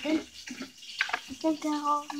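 A boy's voice: a few short spoken or rapped syllables, then a drawn-out syllable near the end, over a steady hiss.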